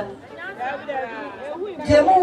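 Speech only: voices talking, with chatter from a crowd.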